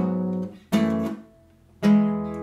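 Nylon-string Yamaha classical guitar, three chords strummed and left to ring: the first is already sounding at the start, the second comes about two-thirds of a second in and the third near the end. The chords are the arrangement figure for the song: an E chord and a partial shape moved up to the fourth fret, something like an F-sharp minor.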